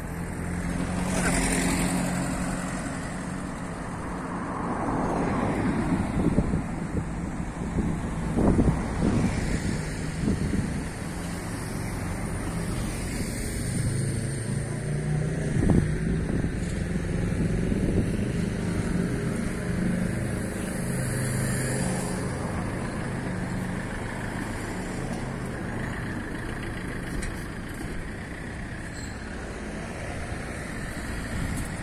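Street traffic: car and van engines running nearby, a steady low hum that swells and fades as vehicles move, with a few short knocks in the middle.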